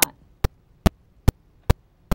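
Sharp, evenly spaced clicks, about two and a half a second, over a low electrical hum. The ticks keep exactly the same beat through the speech and picture cuts around them, so they are a fault on the recording's sound track, not the dabbing of the stencil brush.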